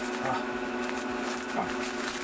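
Bubble wrap crinkling and rustling as it is pulled off a hard drive, over the steady hum of a running IBM/Lenovo System x3650 M4 rack server.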